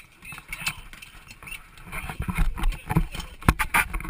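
Irregular knocks and clatters inside the cabin of a small plane that has just ditched in the sea, as passengers scramble to get out. Water splashes against the fuselage and voices are mixed in. The knocking grows busier and louder from about halfway.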